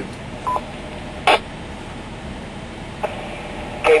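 Two-way amateur radio between transmissions: a short beep about half a second in and a brief burst of squelch noise just over a second in, over steady background hiss, with a faint click near the end.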